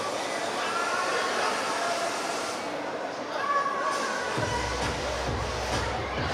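Background music mixed with shouting from the audience in a large hall; a heavy bass comes in about four seconds in.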